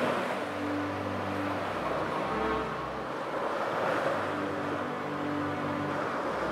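Ocean surf washing in and easing off in slow swells, with soft, steady low tones held underneath.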